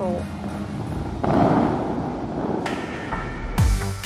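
Loud rushing noise with a faint steady hum underneath, swelling about a second in and easing off. Background dance music with a heavy beat cuts in near the end.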